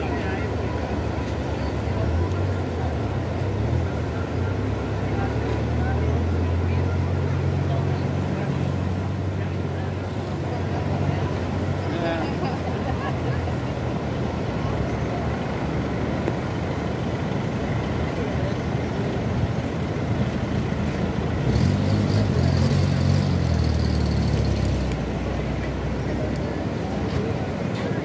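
Floodwater of a swollen river rushing steadily past a bridge, a continuous even noise. A deeper low rumble swells twice, for several seconds early on and again near the end.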